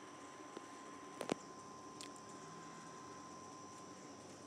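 Faint outdoor background with thin steady high tones, broken by a couple of sharp clicks a little over a second in, typical of a hand handling the phone while its exposure is adjusted.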